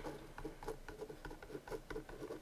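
Marker pen writing on a whiteboard: a quick run of short, faint strokes as a line of numbers and symbols is written.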